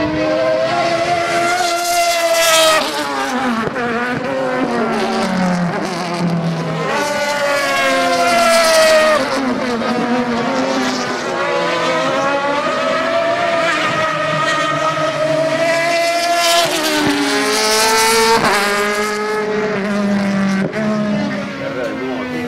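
Súper TC2000 racing touring cars lapping a circuit, their engines revving up and dropping back through gear changes as they brake and accelerate through the corners. Several cars pass in turn, with the loudest passes a couple of seconds in, around the middle and late on.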